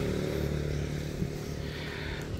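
A passing motor vehicle's engine on the road, a steady hum that slowly fades as it moves away.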